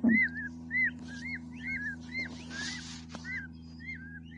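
Newborn peafowl chicks peeping: short, high, rising-and-falling whistled peeps, several a second, kept up without a break over a steady low hum. A brief low sound comes at the very start.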